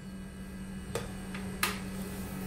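Two light clicks, the second louder, as the clear plastic lid is fitted onto a stainless grinder cup of sunflower seeds, over a steady low hum.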